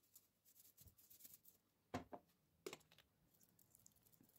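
Near silence: faint room tone with a few brief, faint clicks about halfway through, from a plastic salt container being shaken and handled over the bowl.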